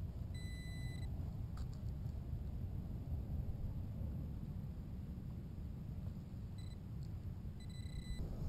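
A Tesoro Tejon metal detector gives a steady beep about half a second long near the start, then two short beeps near the end, as it sounds on a target in the dug hole. A steady low rumble runs underneath.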